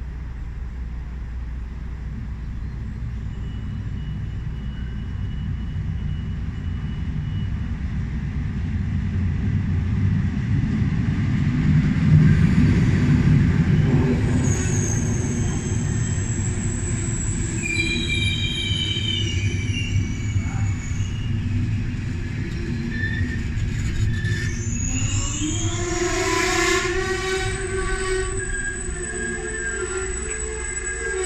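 Locomotive-hauled passenger train arriving at a platform. The low rumble builds to its loudest about twelve seconds in as the locomotive passes, then the coaches roll by with high squealing from the brakes and wheels as the train slows. Rising squeals fill the last few seconds as it comes to a stop.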